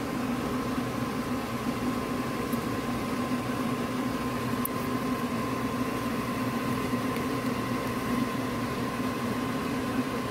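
A steady machine-like hum with a thin, even whine above it, unchanging throughout.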